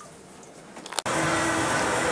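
Quiet room tone with a couple of faint clicks, then about halfway through an abrupt cut to a steady outdoor noise with a low hum running under it.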